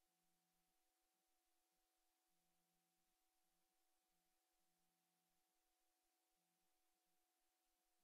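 Near silence: a silent film with no soundtrack, leaving only a very faint steady hum and hiss.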